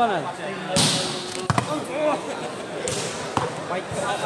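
A volleyball being struck during a rally: several sharp smacks of hands on the ball, spaced a second or so apart.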